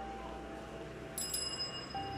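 A bicycle bell rung about a second in, struck twice in quick succession, its bright metallic ring fading within a second.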